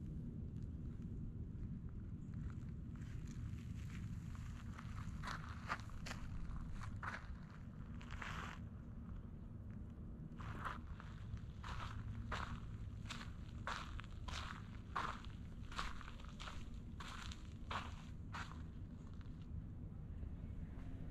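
Footsteps of a person walking on gravel, each step a short crunch, about two a second, clearest in the second half. There is one longer scuffing step about eight seconds in, over a steady low rumble.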